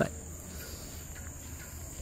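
A steady, high-pitched chorus of insects over a low, even background rumble.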